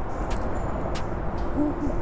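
Steady low rushing noise with a few faint clicks.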